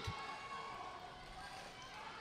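Faint, steady arena ambience: roller derby skaters' quad skate wheels rolling on the sport-court floor, with distant crowd noise.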